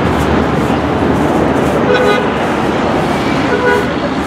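Busy city street traffic, with engines running, and two short vehicle horn toots: one about two seconds in and another near the end.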